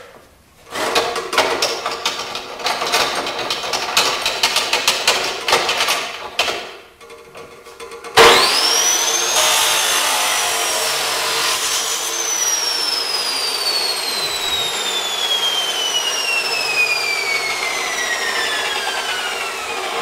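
Knocks and rattles as a metal part is set in place, then an electric chop saw starts with a fast rising whine. It cuts through the metal mic-stand adapter for a few seconds. The blade then coasts down with a long, steadily falling whine.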